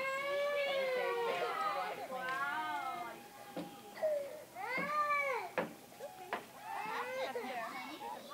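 Toddlers' high-pitched wordless voices, drawn-out calls and squeals that rise and fall, loudest near the start and again about halfway through. A couple of short sharp knocks come just after the middle.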